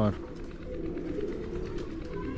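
Domestic pigeons cooing in their loft, a low continuous murmur.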